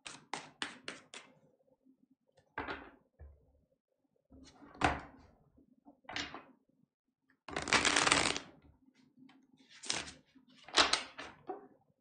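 Tarot cards being shuffled and handled: a quick run of clicks at the start, scattered flicks and thumps, and one longer rustle of shuffling about eight seconds in.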